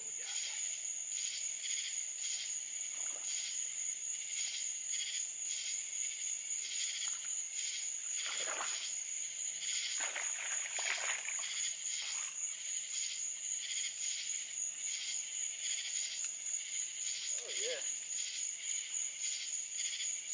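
Summer night chorus of insects and frogs: a steady high-pitched insect drone over a pulsing chorus of calls that repeats about one and a half times a second, with a few lower calls now and then.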